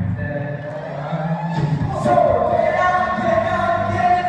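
A group of voices singing together into microphones over backing music, amplified through the hall's sound system, with a long held note in the second half.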